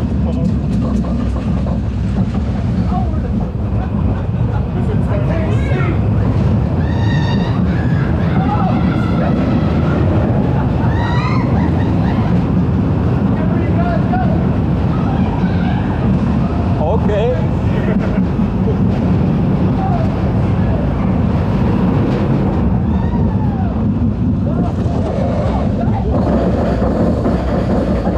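Arrow steel looping roller coaster train in motion, heard from a rider's seat: a steady, loud rush of wheel rumble and wind, with riders' screams and whoops rising and falling at several points.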